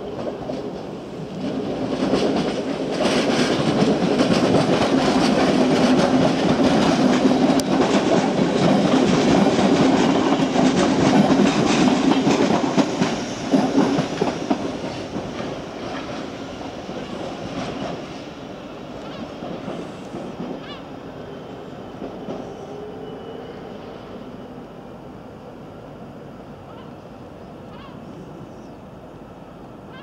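An NS Sprinter electric multiple unit passing on the tracks: the running noise of its wheels on the rails builds a couple of seconds in, stays loud, with a dense run of clicks, until about fourteen seconds in, then fades away into a lower steady background with a few scattered clicks.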